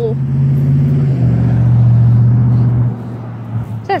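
A passing road vehicle's engine: a loud, steady low drone whose pitch drops slightly about a second in and fades out near the end.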